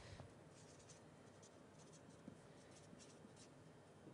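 Near silence with faint writing on a board: soft, scattered scratches and taps.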